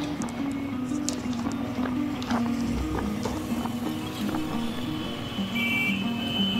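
Background music: a low melody moving in short steps, with light ticking percussion.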